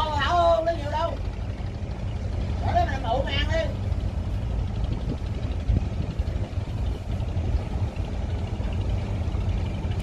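Fishing boat's inboard diesel engine running at a steady low drone as the boat moves slowly through the harbour. A voice calls out twice in the first few seconds.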